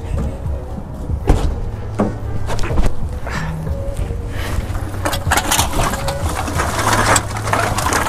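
Clear plastic bags full of empty aluminium drink cans rustling and rattling as they are handled and set down, with a few sharp knocks in the first three seconds and dense crinkling from about halfway on. Music plays underneath.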